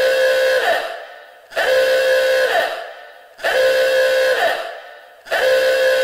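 A horn-like blast on one steady note, held just under a second and then fading, repeated about every two seconds as an identical looped sound effect.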